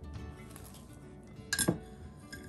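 A single sharp clink against the glass mixing bowl about one and a half seconds in, ringing briefly, over soft background music.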